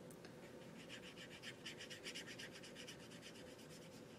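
Paintbrush rubbing watercolor paint onto watercolor paper in quick, faint scratchy strokes, about ten a second, stopping shortly before the end.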